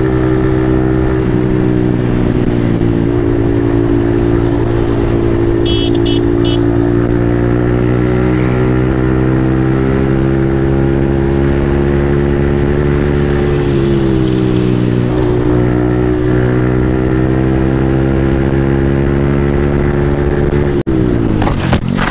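Yamaha MT-15's single-cylinder engine running steadily at speed under wind rush, its note dipping briefly and recovering about two-thirds of the way through. Near the end the sound cuts out for an instant and the engine note falls away steeply as the bike goes down in a crash.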